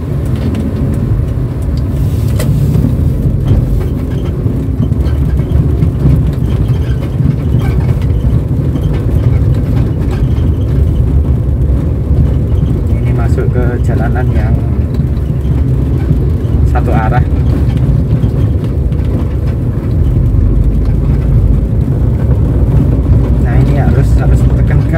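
Cabin sound of a 2007 Daihatsu Terios TX on the move: its 1.5-litre four-cylinder engine and road noise make a steady low rumble that grows louder near the end.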